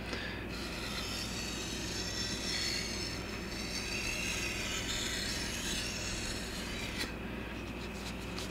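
Steel katana blade being drawn along a wet 1000-grit Shapton Kuromaku whetstone: a quiet, continuous scraping rub of steel on stone, ending with a small click about seven seconds in.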